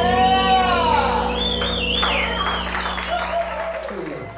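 A live rock band's last chord rings out with gliding, bending electric guitar notes. An audience then whoops and claps, and the sound fades away near the end.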